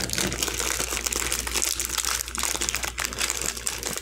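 Crinkling of a Ferrero Rocher chocolate's clear plastic sleeve and gold foil wrapper as it is unwrapped by hand. The crackling is continuous and busy throughout.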